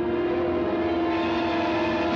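Orchestral trailer music holding one sustained, dissonant chord of several steady tones, horn-like and unbroken.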